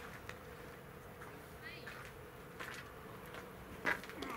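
Quiet ballfield background with faint distant voices, then one sharp crack just before the end as the pitched baseball hits at home plate.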